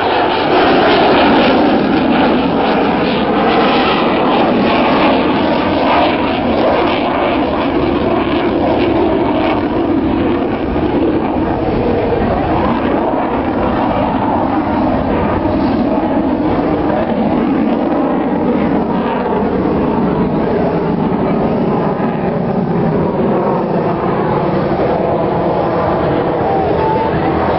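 Jet noise of an F/A-18 Hornet fighter's engines during a display pass, loudest in the first couple of seconds and slowly easing as the jet climbs away.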